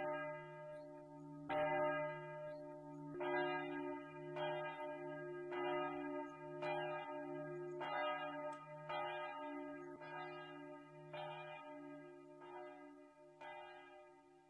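A church bell tolling slowly, struck about once a second, each stroke ringing on into the next so that a steady hum runs underneath; the strokes grow a little fainter near the end.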